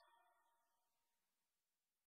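Near silence: the choir's song has just ended.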